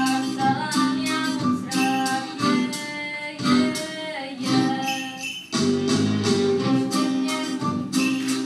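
Instrumental music accompanying a stage song: held melody notes over a steady beat, with a brief dip in loudness about five and a half seconds in.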